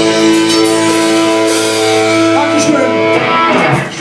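Live punk band's distorted electric guitars holding one loud ringing chord, which breaks off about three seconds in as the song ends.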